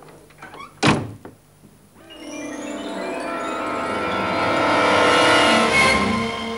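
A door shuts with a single thud about a second in. Then background music fades in and builds steadily louder.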